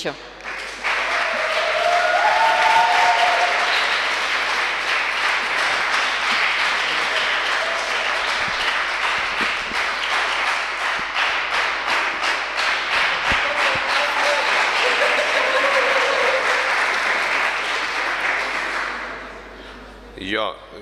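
Audience applauding: many hands clapping, starting about a second in, holding steady, and dying away near the end.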